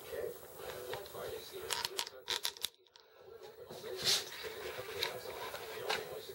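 Hands handling a plastic action figure and its packaging: scattered light clicks and crinkles, with a brief near-silent gap about three seconds in.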